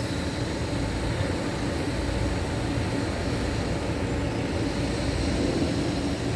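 Steady low rumbling outdoor background noise, with no distinct events.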